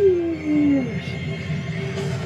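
Anime soundtrack: a voice's drawn-out howling cry that slides down in pitch and dies away within the first second, followed by a low rumble under a faint held musical tone.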